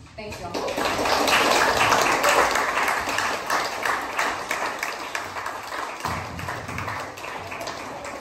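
Audience applauding, swelling about half a second in and slowly tapering off.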